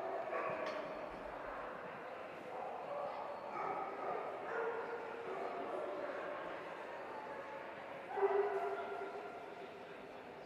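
Dogs barking and yipping, with the loudest bark about eight seconds in.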